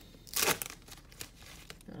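Trading-card pack wrapper being torn open and crinkled, with one sharp rip about half a second in, then faint rustling.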